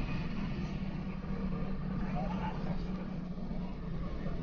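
Bus engine running with a steady low drone, heard from inside the cab while moving slowly in traffic.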